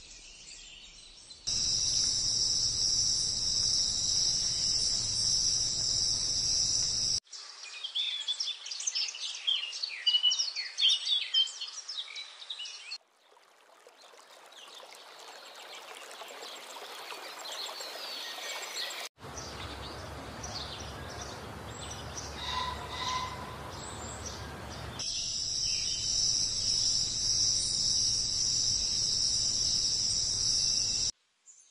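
A string of outdoor nature sounds with abrupt changes. It starts with a steady, shrill insect chorus like crickets, then sharp bird chirps, then a soft hiss that slowly swells, then a stretch with a few bird calls, and near the end the steady shrill insect chorus returns.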